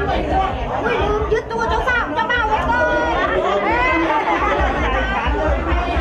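Several people chattering over one another, a crowd of voices talking at once.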